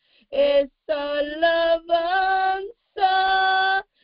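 A woman singing unaccompanied: short sung phrases broken by brief silences, then a steady held note near the end.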